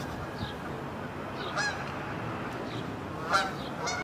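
Birds calling outdoors: a short call about a second and a half in, then a louder one near the end followed by another, over faint high chirps repeating every second or so.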